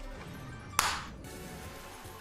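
Online slot game audio: quiet game music with a sudden short swish a little under a second in, the sound effect that starts the big-win celebration.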